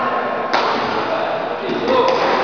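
Indoor badminton hall ambience: background voices and general hall noise, with one sharp tap or knock about half a second in.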